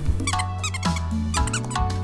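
Plush giraffe dog toy squeaking in two quick runs of short squeaks as it is squeezed, over background music.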